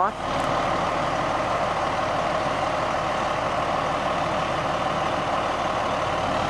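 Fire engine's engine running steadily at idle, an even, unchanging drone.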